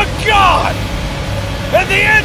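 Short shouted vocal calls that rise and fall in pitch, one near the start and more near the end, over a steady low rumble.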